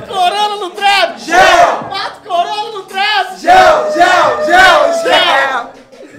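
Several men shouting and cheering together loudly in a rapid string of yells, about two a second, as hype.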